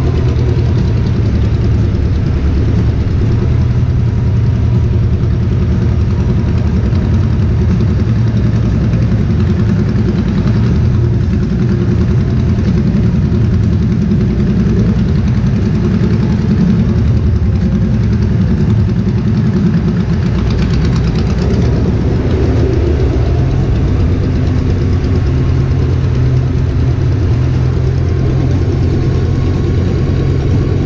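Touring motorcycle's engine running steadily at low speed in slow traffic, heard from on the bike.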